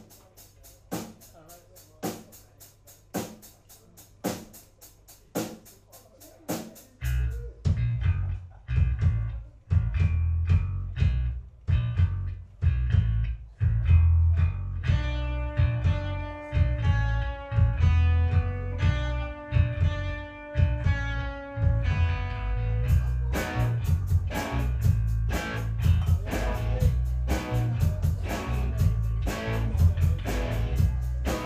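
Live rock band starting a song: a drum beat clicks about twice a second alone, electric bass comes in about seven seconds in, held guitar chords enter around halfway, and the full band with cymbals joins at about 23 seconds, getting louder.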